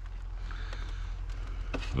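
Craftsman snowblower's Kohler Pro engine running steadily, a low hum, with a couple of faint clicks.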